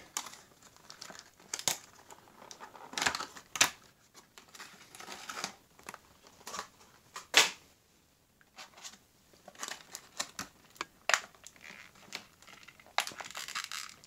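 Clear plastic diecast packaging being handled and pulled apart: blister shell and plastic wrap crinkling and crackling in irregular sharp bursts, with a brief lull about eight seconds in.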